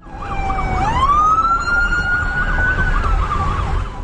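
Emergency vehicle siren wailing: its tone rises sharply about a second in and holds high, easing down a little near the end. A second, faster up-and-down siren sounds alongside it over a low rumble.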